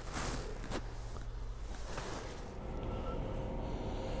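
Faint footsteps and knocks from a handheld phone being carried, a few short bumps in the first two seconds, over a low steady hum.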